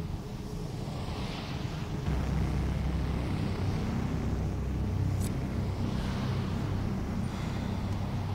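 A low, steady rumble that swells about two seconds in and holds, with a single sharp click about five seconds in.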